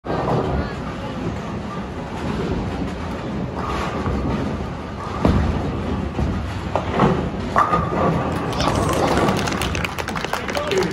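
Bowling alley ambience: bowling balls rolling down the lanes with a low rumble, sharp impacts of balls and pins about halfway through, and a clatter of pins in the last second or so, under the chatter of a crowd.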